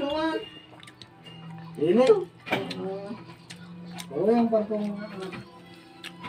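Short bits of voice and background music over a steady low hum, with a few faint clicks in between.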